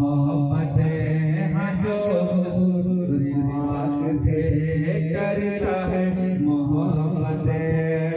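Men's voices chanting an Islamic devotional recitation, led by one man singing into a microphone, with long held notes.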